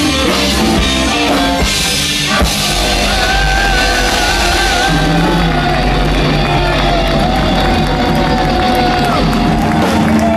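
Blues-rock band playing live at full volume, with drum kit and electric guitar. From about three seconds in, a held, wavering lead melody runs over the steady bass and drums.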